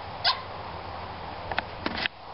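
A dog gives one short, high yip about a quarter second in, then a few sharp clicks follow near the end.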